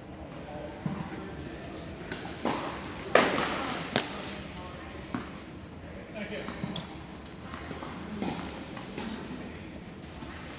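Tennis balls being struck by rackets and bouncing on a hard court in a large indoor hall: a string of sharp pocks, irregularly spaced, the loudest a little past three seconds in.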